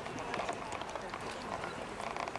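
Indistinct background chatter of several voices, with faint scattered ticks and no clear single event.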